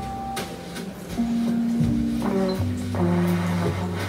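A jazz band playing live, with a trombone holding long notes over double bass and light cymbal strokes.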